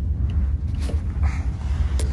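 Muffled low rumble of handling noise from the phone's microphone rubbing against clothing.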